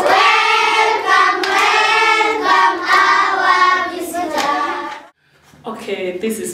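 A group of children singing together, with a few hand claps among the singing; the song cuts off abruptly about five seconds in.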